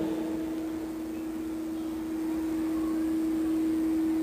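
A steady low single-pitched tone from the public-address sound system, swelling slightly over a faint hiss.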